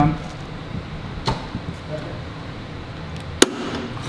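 Sharp clicks from an automatic transmission's shift linkage and ratchet shifter being moved into gear: a faint click about a second in and a much louder one near the end. The shift cable is adjusted a little tight.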